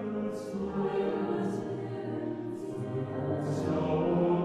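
Mixed choir of men's and women's voices singing a Kazakh folk song in Chinese, holding sustained chords, with a sharp sibilant consonant about once a second as the words change.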